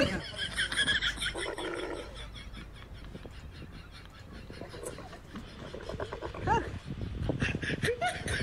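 A camel calling out loudly in a rasping voice as a heavy rider mounts it, mostly in the first couple of seconds, with quieter calls later. It is protesting under the rider's weight.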